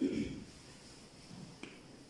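A pause in a man's sermon: a short voiced sound from the speaker at the start, then a quiet room with a single faint mouth click about one and a half seconds in.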